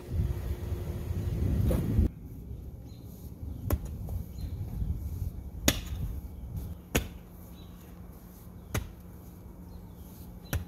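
Steel shovel scraping and grinding through hard clay soil, then four sharp chops as the blade is driven into the clay, spaced a second or two apart.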